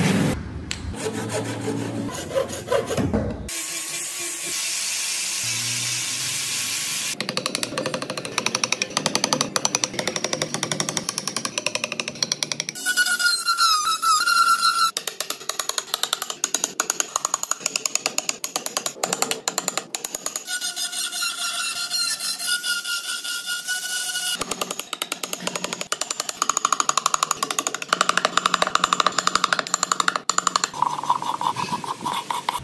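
Hand saw cutting a block of Fokienia wood, then a steel chisel paring and scraping the wood in rapid short strokes.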